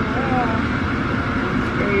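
Steady road and engine noise inside a moving car's cabin, an even rush that does not change through the two seconds.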